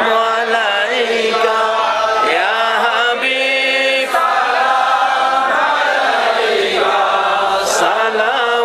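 A crowd of men chanting a devotional chant together in a melodic line, with one long held note about three seconds in.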